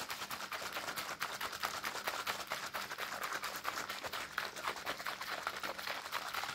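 Plastic baby bottle of milk being shaken hard by hand, the liquid sloshing in a fast, even rhythm of short knocks, several a second, to mix in milk of magnesia.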